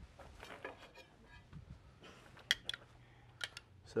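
A few light clicks of a metal spoon against a small ceramic ramekin as dressing is scooped out, over quiet room tone. The clicks come in the second half.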